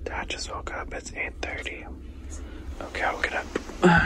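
People whispering to each other over a low steady hum, with a short loud bump just before the end.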